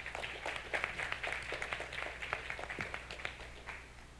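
Audience applauding after a talk: a short round of many irregular claps that fades out just before the end.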